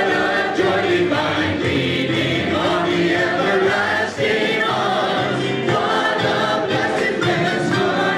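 A worship team of several singers on microphones singing a gospel praise song together, backed by acoustic guitar and keyboard.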